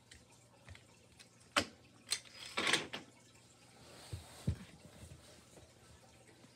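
A few separate light clicks and knocks with quiet between: small toy vehicles being picked up and set down on a hard floor by hand.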